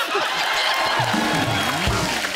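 Studio audience laughing and applauding after a punchline, with a short comic music sting of low stepping notes starting about halfway through.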